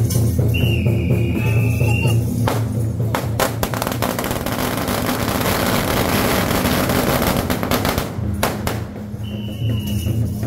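A string of firecrackers set off at a deity's sedan chair in the 'eating firecrackers' rite: a few sharp bangs about two and a half seconds in, then dense rapid crackling for about five seconds, ending with a couple of last bangs. Procession music with drums and a high held note plays at the start and returns near the end.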